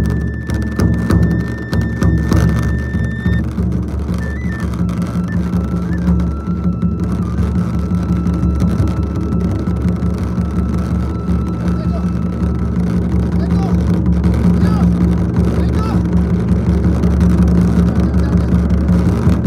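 Japanese taiko drums played in a fast, continuous roll, with a transverse flute over them holding long high notes, one sustained for several seconds in the first half.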